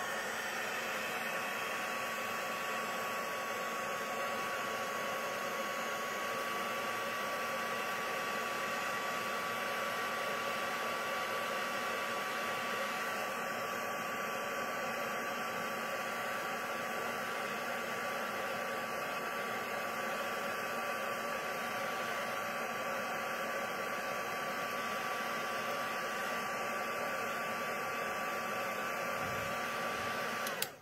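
A handheld craft heat gun (embossing heat tool) running steadily, its fan blowing hot air with a thin steady whine over it, as it heats a shrink-plastic embellishment.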